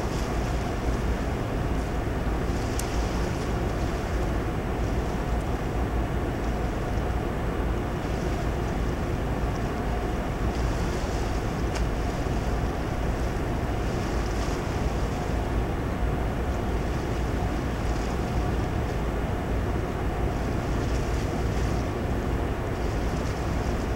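Steady wind on the microphone over a low, constant machinery hum with a faint steady tone, typical of a ship's deck, with soft hissing swells every few seconds.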